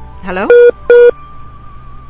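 Two short, loud, identical electronic beeps on a phone call, about half a second apart: the sound of the call dropping, with the remote guest cut off.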